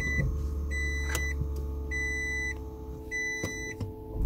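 A Toyota Prius dashboard chime beeping over and over, each beep about half a second long and about one every 1.2 seconds, over a low steady hum of the car's running engine.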